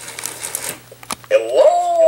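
Light handling clicks, a sharp click about a second in, and just after it a loud, long, wavering howl-like cry that starts suddenly and holds.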